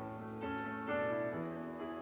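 Live band playing a slow, soft instrumental passage: sustained electric guitar and keyboard chords that change about half a second in and again a little after a second.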